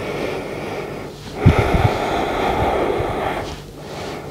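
A person breathing deeply into a close microphone: two long, noisy breaths, the second about two seconds long, with a few soft low bumps at its start.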